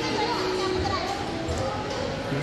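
Indistinct chatter of people and children in a large indoor hall, with music in the background.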